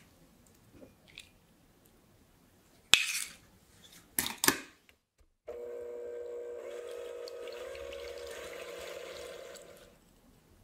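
A couple of short, sharp clatters, then about halfway through an electric hand mixer starts and runs with a steady hum, its beaters whisking egg whites to a froth in a glass bowl. The mixer fades out near the end.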